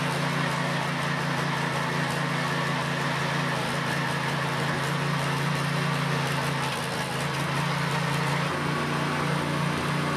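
Small engine of a walk-behind tiller running steadily under load as its tines dig a trench in soil. The engine note dips briefly about seven seconds in, then steadies again.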